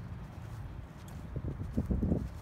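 Steady low rumble of wind on the phone's microphone, with a few soft footsteps on grass in the second half.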